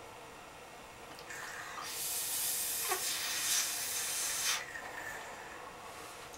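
A vape hit taken on an Immortalizer rebuildable dripping atomizer: a loud breathy hiss of air and vapour that builds over about a second, runs for about three seconds and cuts off suddenly, followed by a softer hiss.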